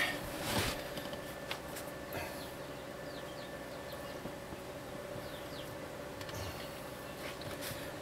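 Light handling of electrical wires: a faint rustle and a few small clicks in the first couple of seconds, over a low, steady hum.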